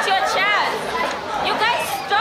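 A roomful of schoolchildren chattering and calling out over one another, several high voices overlapping.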